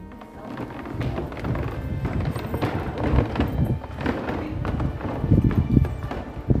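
Footsteps of several people walking into a hall, an uneven run of knocks and shuffles mixed with the rumble of a handheld camera moving with them, over faint music.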